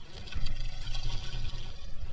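A hooked pike thrashing at the water's surface, splashing loudly as it is brought to the landing net; the splashing starts about a third of a second in and keeps going.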